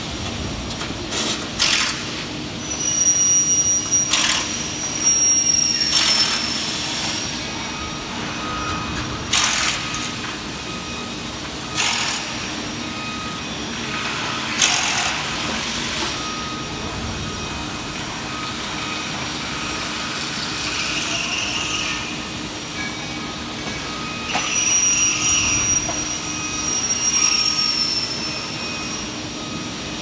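Fabrication-shop machinery noise: a steady hum, with repeated short, sharp bursts of hiss through the first half. A high whine that falls slightly in pitch sounds twice, a few seconds in and again near the end.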